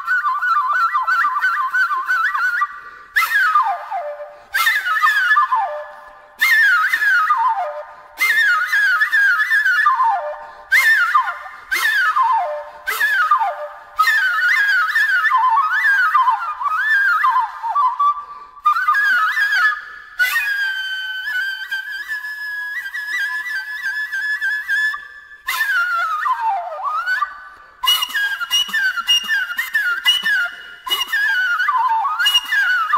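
Unaccompanied flute playing in short phrases of quick descending runs, with a few long held high notes about two-thirds of the way through.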